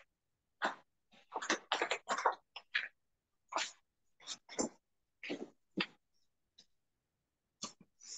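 Short, quiet vocal sounds from a person: about a dozen brief bursts with silence between them, some too faint or broken to be words.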